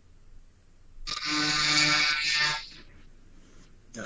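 A man's voice holding one long, steady 'uhh' for about a second and a half, starting about a second in and fading out, heard over a video-call connection.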